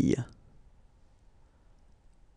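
The end of a voice pronouncing the French word "oreille", then quiet room tone with a few faint clicks near the end.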